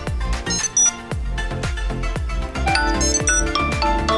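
Background music, with a short ringtone-like run of high electronic notes about half a second in and again, climbing in pitch, about three seconds in: the iPhone's find-my-phone ring set off by double-pressing the button on a Tile Mate tracker.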